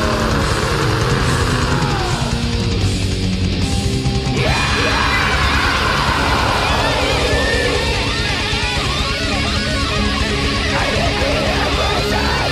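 Early-1990s Swedish death metal playing loud and dense: distorted electric guitars, bass and drums. About four seconds in, high lead lines come in that bend and slide up and down in pitch over the riffing.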